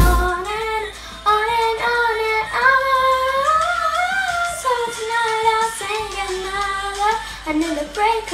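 A young girl singing solo and unaccompanied, one voice line with sliding and held notes. Louder drum-backed music cuts off right at the start.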